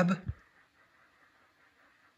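The last of a man's words trailing off in the first moment, then near silence: room tone.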